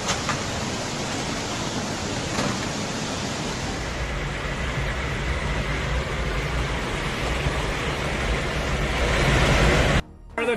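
Rushing floodwater: a steady, dense rush of noise with no pauses, growing a little louder near the end.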